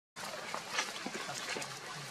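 Sound cuts out completely at the start, then steady outdoor background hiss returns with scattered short clicks and brief high chirps.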